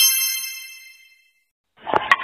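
A bright bell-like chime sound effect, several high tones at once, ringing and dying away within about a second.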